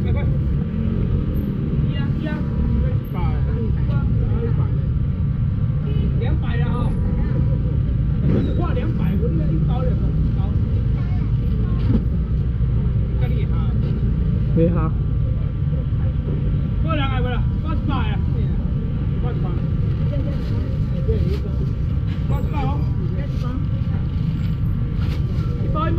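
Market chatter: voices talking on and off over a steady low rumble.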